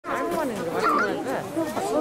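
Several people talking over one another in overlapping chatter.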